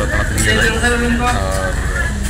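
A man speaking over a steady low background rumble.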